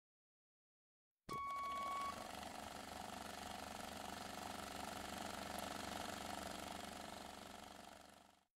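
A brief steady electronic beep starts suddenly about a second in, then gives way to a faint steady hiss that fades out near the end.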